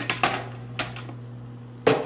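A few sharp clicks and knocks, the loudest near the end, as the handheld camera is gripped and moved, over a steady low hum.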